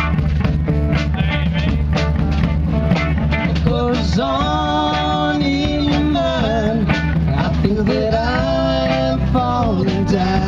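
Live rock band playing: electric guitars, electric bass and drums keeping a steady beat, with a male voice singing long held notes from about four seconds in and again near the end.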